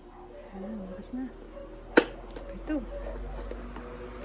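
Electric fan motor running on test after its failed starting capacitor was replaced with a new 2 µF one: a steady low hum that grows stronger in the second half. A single sharp click about halfway through is the loudest sound, with voices talking in the background.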